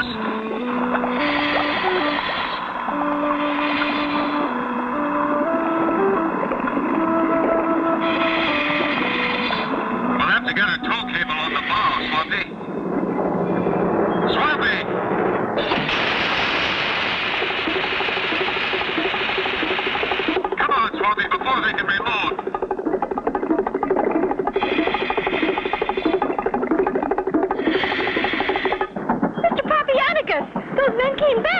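Cartoon background music with a stepping melody, then a held note. About sixteen seconds in, a hissing rush sound effect of spear guns firing underwater lasts about four seconds over the music.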